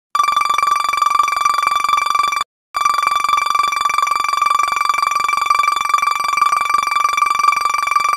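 Electronic sound effect under text being typed out on screen: a steady, buzzing high tone with a fast rattle. It breaks off briefly about two and a half seconds in, then resumes.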